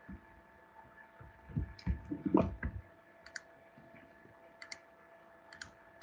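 A few soft low knocks about two seconds in, then a computer mouse clicking in quick press-and-release pairs, three times in the second half, over a faint steady electrical hum.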